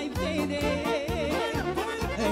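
Live Moldavian folk dance music (hora/bătută) from a keyboard-led band: a steady pulsing bass and drum beat under a lead melody held with a strong, regular vibrato.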